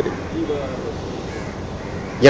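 Faint bird calls, a few short call fragments, over steady outdoor background noise.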